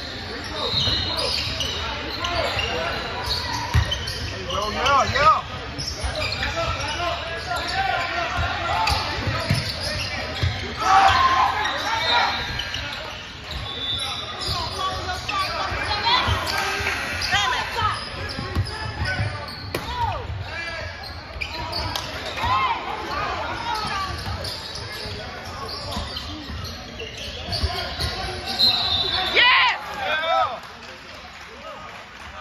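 Basketball game on a hardwood gym floor: the ball dribbling with repeated thuds, sneakers squeaking on the court, and players and spectators calling out, all echoing in a large gym.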